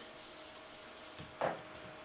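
Dry-erase board eraser rubbed across a whiteboard, a faint steady wiping. A brief louder sound about one and a half seconds in.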